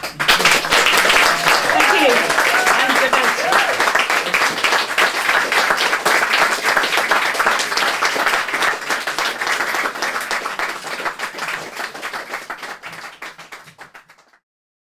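Audience applauding at the end of a song, with a few voices cheering and calling out in the first seconds. The clapping starts suddenly and thins out, fading near the end.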